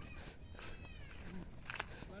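Sheep bleating faintly at a distance: a thin call falling in pitch about half a second in, then a short low bleat.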